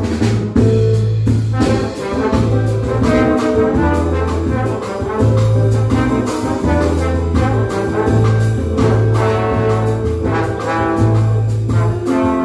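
Two trombones playing a jazzy tune together over a band accompaniment with a steady bass line and beat.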